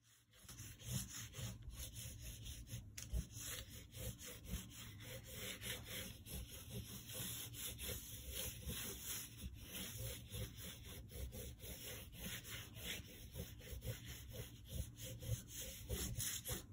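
Black oil pastel stick rubbed rapidly back and forth on drawing paper, a continuous run of quick short strokes as the figure is filled in.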